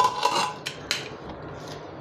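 Metal pressure-cooker lid clanking as it is lifted off the pot once the steam has died down: a sharp clink with a brief ring, then a couple of lighter knocks.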